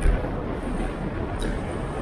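Wind and road rumble picked up by a handlebar-mounted action camera on a moving bicycle, with a jolt right at the start and a sharp click about one and a half seconds in.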